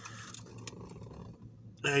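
Faint crinkling of a foil sandwich wrapper being handled, with a single small crackle a little before a second in; a man's voice starts near the end.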